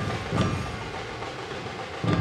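Parade dhol (large double-headed barrel drum) beaten: a deep beat about half a second in that dies away, over a steady crowd and street din.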